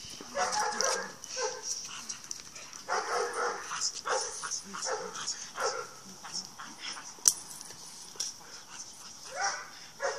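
A dog barking in short repeated bursts as it is worked in protection bite training, with a single sharp crack about seven seconds in.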